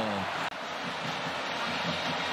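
Stadium crowd noise: a steady, even din from the stands, following the last falling bit of a commentator's long drawn-out shout in the first moment.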